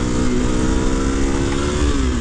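Stock Suzuki DR-Z400SM's single-cylinder four-stroke engine pulling hard under throttle in third gear to lift a wheelie. The pitch climbs at first, then holds, and falls slightly near the end.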